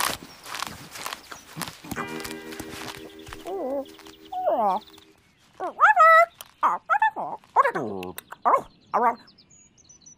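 Wordless cartoon character voices: a held musical note, then a run of squawky, gliding calls that rise and fall, the loudest about six seconds in as the heron opens her beak.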